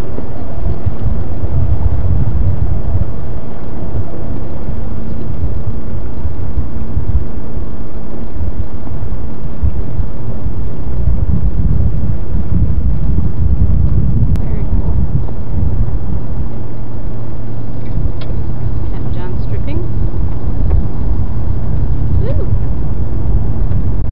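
Loud, steady rumble of wind buffeting the microphone over a boat's outboard motor running with a steady low hum, while the boat is underway.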